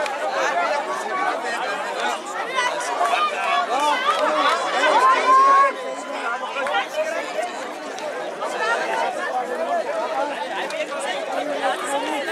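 Sideline crowd of rugby spectators talking and calling out over one another, several voices overlapping, with one loud drawn-out shout about halfway through.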